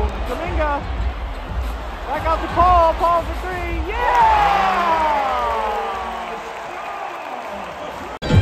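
Basketball arena sound during live play: crowd and PA noise with a low rumble, several short pitched calls, then a long falling call about halfway through that fades away.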